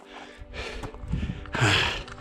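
A man breathing hard from the exertion of a steep climb, with a louder breath and a brief spoken syllable near the end, over faint background music.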